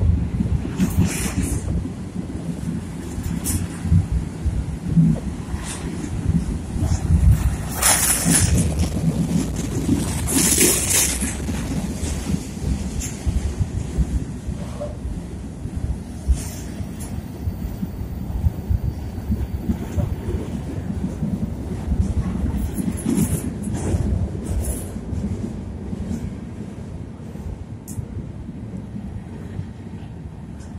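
Freight train's boxcars rolling past close by: a steady heavy rumble and rail clatter, with brief harsh high-pitched bursts about eight and eleven seconds in, easing off slightly in the last few seconds.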